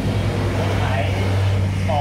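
A man talking, over a steady low drone with a few even pitched lines, like a motor running nearby.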